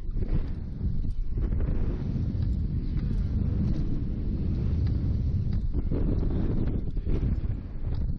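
Rushing air buffeting the Slingshot capsule's onboard camera microphone as the capsule swings through the air: a heavy low rumble that rises and falls in gusts, with brief lulls.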